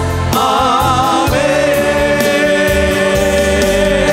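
Malayalam Christian worship song: a male lead singer with backing voices sings "Hallelujah … Amen" over a band accompaniment. He sings a short wavering phrase, then holds one long note from just over a second in.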